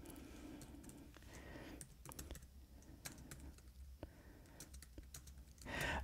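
Faint, irregular key clicks of typing on a computer keyboard, over a low steady hum.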